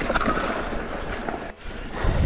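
Wind rushing over the camera microphone with the rolling rumble of a mountain bike on a dirt trail; the noise drops out abruptly about one and a half seconds in, then picks up again.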